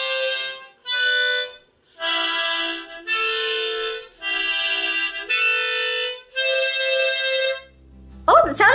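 Harmonica played in chords, alternating blow and draw: about seven separate breaths of roughly a second each with short gaps, the chord changing from breath to breath. It is improvised by a beginner.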